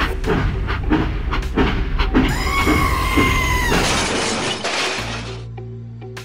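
Background music over a run of clattering knocks, a held whistle-like tone lasting about a second and a half, then a loud crashing, shattering noise that cuts off abruptly, as a toy train derails into a pile of miniature bricks.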